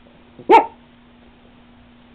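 A dog barks once, briefly, about half a second in.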